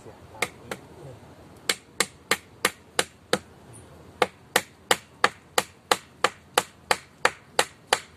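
Hammer blows driving a thick nail into a wooden pole of a shelter frame: sharp knocks at about three a second, two at first, then a run of six, a short pause, and a longer run of about a dozen.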